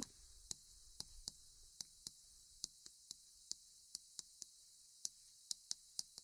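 Chalk writing on a blackboard: a faint, irregular series of small clicks and taps as the chalk strikes the board with each stroke.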